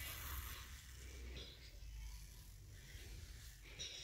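Faint sounds of a toddler drinking from a feeding bottle: soft breaths through the nose, a few brief hissy breaths a couple of seconds apart over a low rumble.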